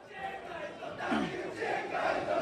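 Football supporters' crowd in the stand: a hubbub of many voices and scattered shouts, growing louder.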